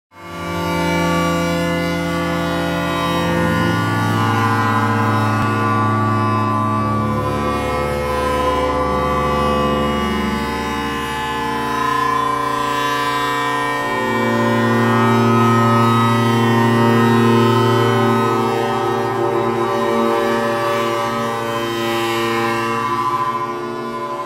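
Long String Instrument and cello sounding a sustained drone thick with overtones. The long wires are set into their lengthwise (longitudinal) vibration by strokes along the string. The drone fades in at the start, and its low notes shift a few times.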